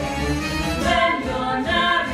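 A show tune sung on stage by the cast with instrumental accompaniment: sung voices over a steady bass line.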